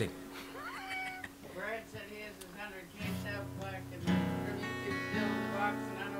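Guitar chords played softly, the first struck about three seconds in and more about a second and two seconds later, each left ringing.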